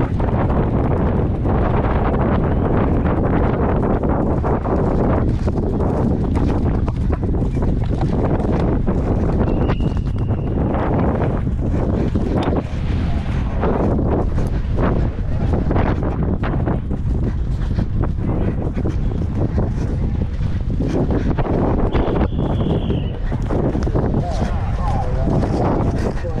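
Heavy wind buffeting on an action-camera microphone as a horse gallops on turf, with the thuds of its hoofbeats coming through the rumble. Twice, a short high tone cuts through.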